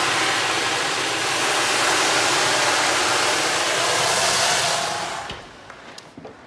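Water poured into two preheated cast-iron pans in a hot oven, flashing to steam with a loud, steady hiss that dies away about five seconds in. This is steam being made for baking rye bread, which likes a lot of steam.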